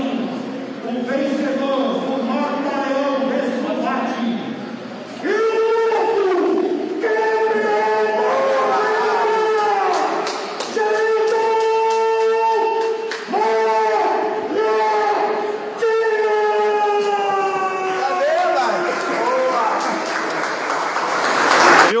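Ring announcer's voice over the arena PA, first speaking, then shouting long drawn-out words as he announces the title winner. Crowd cheering swells up near the end.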